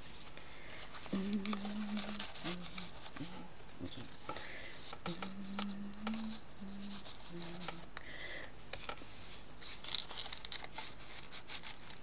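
Paper and card pieces being handled on a cutting mat: intermittent rustling, crinkling and light taps. A few short, soft hummed notes sound between about one and eight seconds in.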